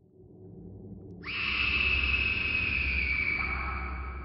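Dramatic sound effect: a low rumble swells, then about a second in a long, high screech cuts in suddenly, sliding slowly down in pitch and fading.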